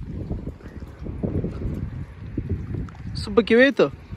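Gusty low rumble of wind buffeting the microphone for about three seconds, then a brief spoken phrase near the end.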